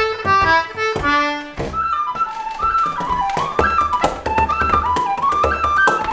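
Lively Irish traditional tune played on a tin whistle, quick ornamented runs of notes over a low accompaniment; a reedier, fuller-toned instrument carries the tune for the first second or so before the whistle takes over.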